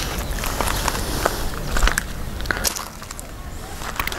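Handling and movement noise from a handheld camera: scattered light crackles and clicks over a low rumble.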